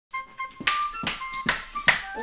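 Hand claps, four in an even beat a little over two a second, over light background music.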